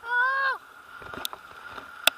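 A short high-pitched vocal cry of about half a second at the start, holding its pitch and dropping off at the end, followed by fainter murmurs. A faint steady high tone runs underneath.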